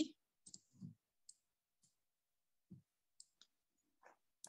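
Near silence broken by a few faint, scattered clicks and soft low bumps.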